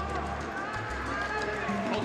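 Indistinct voices over music with low bass notes playing through the arena's sound system.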